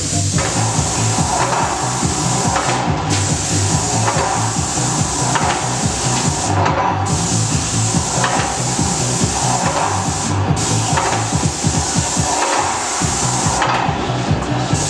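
Graco 695 airless paint sprayer spraying panelling: a loud, steady hiss of paint leaving the gun in long passes, cut off for a moment every three to four seconds as the trigger is released. A rhythmic low pulsing runs underneath throughout.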